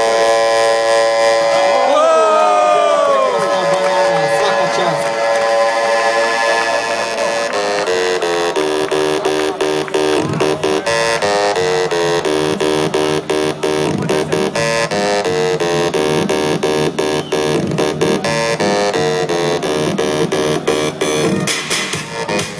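Loud electronic music led by synthesizer. A falling synth sweep comes about two seconds in, then a pattern of repeated stepped notes over a beat.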